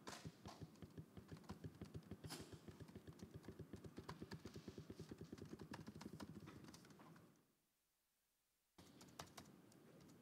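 Faint typing on a computer keyboard, a steady run of keystrokes that stops dead about seven and a half seconds in, then a few more keys after a second of silence.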